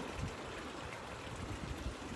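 Faint, steady outdoor background noise: an even hiss with no distinct events.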